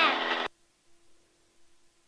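A brief burst of a person's voice over the headset intercom in the first half second, then near silence with only a faint steady hum.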